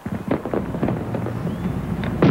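Firework crackling from a charge set on a watermelon: a few sharp pops in the first second, then a steady hiss.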